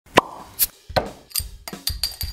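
A quick series of about five or six short, sharp pops, roughly one every 0.4 seconds.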